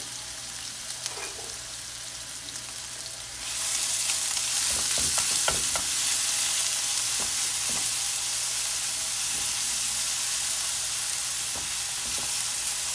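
Grated onion, ginger and garlic sizzling in hot oil in a frying pan while a silicone spatula stirs them. The sizzle turns much louder about three and a half seconds in and stays loud, with short scraping strokes of the spatula over it.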